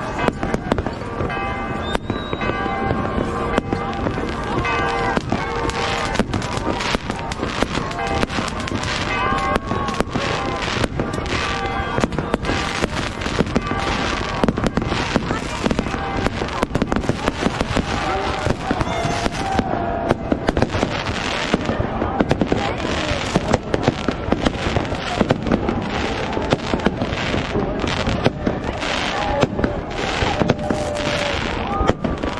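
Aerial fireworks display: a dense, continuous run of bangs and crackles from bursting shells, coming thicker in the second half, with a crowd's voices beneath.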